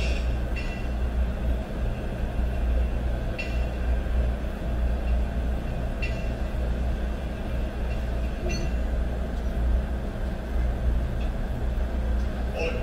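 A steady low rumble with a constant hum, and a faint short high sound every two to three seconds.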